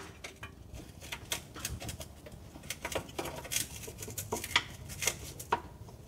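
Irregular metallic clicks, taps and scrapes as the automatic transmission oil pan is worked at its edge to break it loose from its gasket seal.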